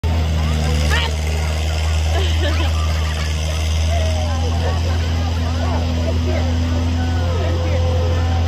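A steady low motor hum, like an engine running, with many children's high voices chattering and calling over it.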